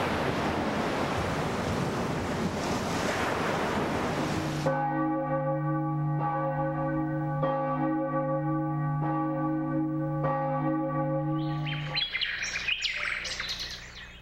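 Rushing ocean water for the first few seconds, then church bells ringing with long, overlapping hum, struck about every second and a half, and quick high bird chirps near the end.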